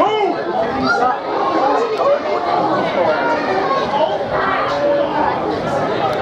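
Many voices at an outdoor football match chattering and calling out at once, overlapping so that no single speaker stands out.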